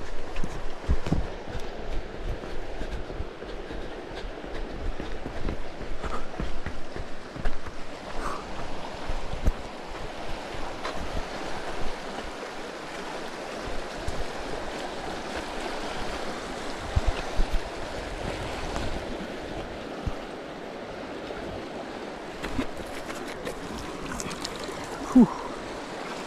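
Fast-flowing river rushing over rocks, a steady wash of water noise, with scattered low thumps in the first half.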